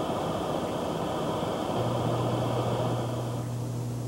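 Static hiss from a radio-astronomy receiver's audio output: radio noise picked up from space, made audible. A steady low hum joins about two seconds in, and the higher hiss thins out near the end.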